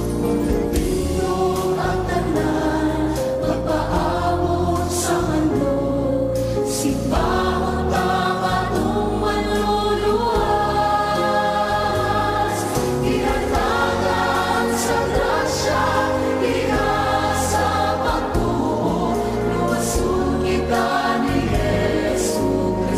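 A Bisaya (Cebuano) Christian worship song: voices singing together over instrumental backing.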